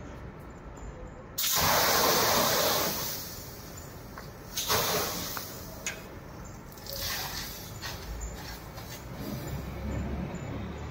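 Stored-pressure wet chemical fire extinguisher spraying onto a pan of burning cooking oil. A sudden loud hissing rush starts about a second and a half in and eases after a couple of seconds, with shorter bursts later as the oil fire is smothered under steam and froth.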